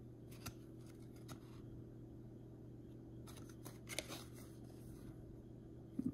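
Trading cards being slid and flipped through in the hands: a few faint soft clicks and rustles, the loudest about four seconds in, over a low steady room hum.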